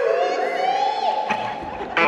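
Live audience whooping and shouting during a break in the acoustic guitar song, with gliding cries and one long held shout. The strummed acoustic guitar comes back in loudly at the very end.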